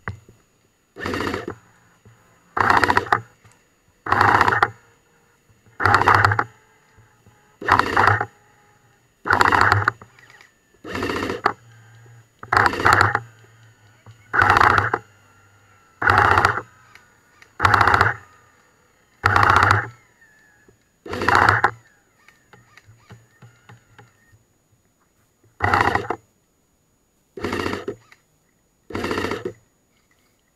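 Airsoft electric support weapon (LSW) firing short bursts, each about half a second long, roughly one burst every second and a half, sixteen in all with a break of a few seconds near the end.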